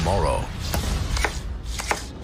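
A series of sharp knocks, about four in a second and a half, over a low steady rumble.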